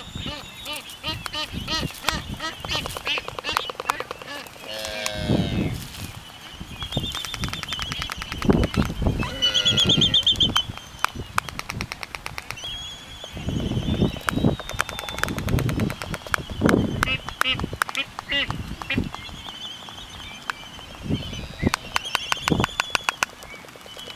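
A pair of black-footed albatrosses dancing in courtship: rapid runs of bill clacking mixed with whistling, braying calls, with a loud drawn-out call about nine seconds in.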